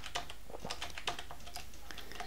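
Computer keyboard keys clicking in short, irregular keystrokes as a line of code is typed, over a faint steady low hum.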